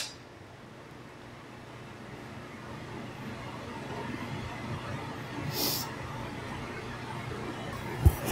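Steady low hum of a commercial kitchen's running exhaust hood and gas range. A little past halfway, a short scrape comes from a spoon stirring sauce in a metal pot.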